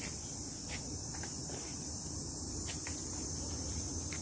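A steady, high-pitched chorus of insects buzzing without a break.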